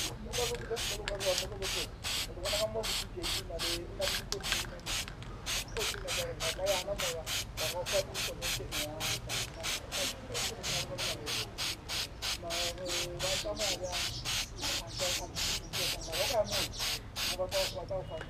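Aerosol can of Plasti Dip spraying onto an alloy wheel: a hiss that pulses about three times a second. Fainter wavering calls run underneath.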